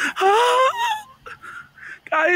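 A person's high-pitched wordless vocal cry, rising in pitch over about a second, followed by a shorter cry falling in pitch right at the end.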